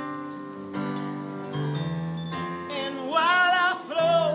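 Live band music with guitar chords ringing. About two and a half seconds in, a male singer comes in on a long, loud held note with a wide vibrato, sung without a microphone.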